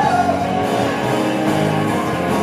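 Live rock band playing a song: guitars, bass guitar, drums and keyboard together at a steady loud level.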